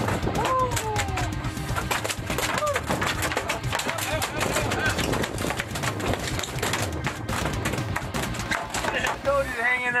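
Excited yells and whoops over background music, with rapid irregular knocking from a freshly gaffed mahi-mahi thrashing on the fiberglass deck.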